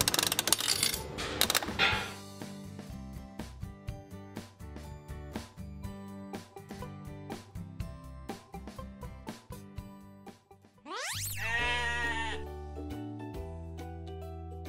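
Children's background music with a steady beat throughout. In the first two seconds the metal crank of a Beaver coin-operated feed vending machine is turned, with a rattle of feed pellets dropping out; about eleven seconds in, a goat bleats once, for about a second.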